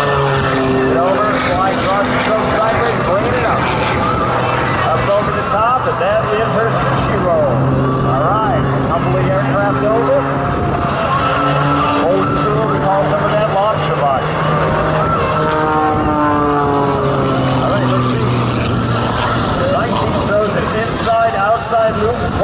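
Aerobatic monoplane's piston engine and propeller running through a routine. The pitch holds, then glides up and down over and over as the plane climbs, dives and pulls through its manoeuvres.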